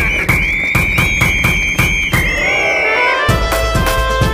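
Outro music with a steady beat of about four strokes a second: a held high tone with small bends carries the first three seconds, then gives way to a tune of short stepped notes.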